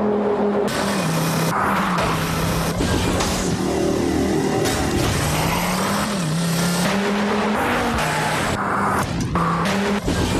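Volvo S60 R's turbocharged five-cylinder engine revving hard at racing speed, its pitch falling and rising several times, over music.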